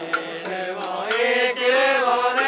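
Sawara-bayashi festival music: a held, slightly wavering melody that swells in loudness about a second in, with a sharp drum or gong strike just after the start.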